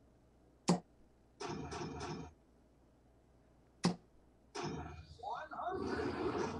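Two soft-tip darts strike an electronic dartboard, one about a second in and the next about three seconds later. Each hit is followed by the board's electronic sound effect. A longer stretch of voice-like sound runs through the last second and a half.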